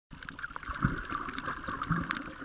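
Underwater sound picked up by a camera in a waterproof housing on a coral reef: a steady hiss with faint crackling, broken by a few low thuds from water moving against the housing.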